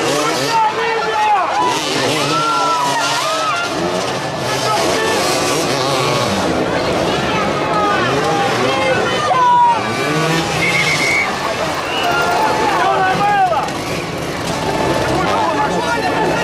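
Several motoball motorcycles running and revving around the pitch, their engine notes rising and falling and overlapping, mixed with the talk of a nearby crowd.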